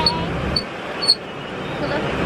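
Steady airliner cabin noise, an even rushing hum, with a short sharp sound about a second in.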